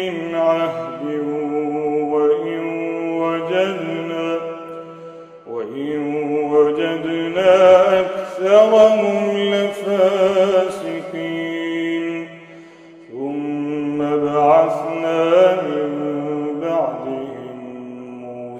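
A man reciting the Quran in the slow melodic tajweed style, holding long drawn-out, ornamented notes. He pauses briefly for breath about five and a half seconds in and again around thirteen seconds.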